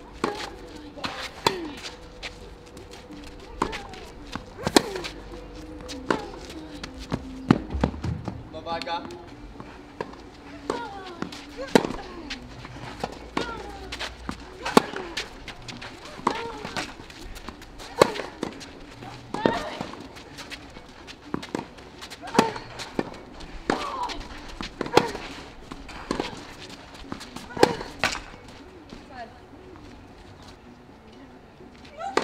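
Tennis rackets striking the ball back and forth in a long baseline rally on a clay court, a sharp hit about every second and a half, with short vocal grunts after many of the shots.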